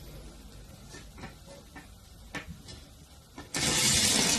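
Light clicks and taps of a bare copper wire coil and a small battery-and-magnet assembly being handled on a table. Near the end, a loud, steady hissing rattle suddenly starts.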